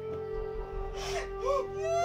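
A woman sobbing, with two short whimpering breaths about a second in and halfway through, over a held note of background music.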